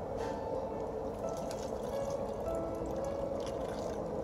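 Background music with held notes, over water being poured from a plastic jug through a plastic funnel into a plastic bottle of fertilizer solution.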